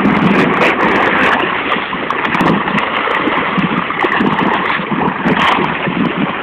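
Water sloshing and lapping at the surface, with many small sharp splashes throughout.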